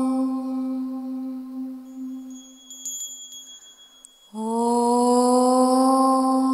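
Mantra meditation music: a long held tone fades away, soft high chime notes ring out in the lull about three seconds in, and just after four seconds a new held tone swells in and sustains.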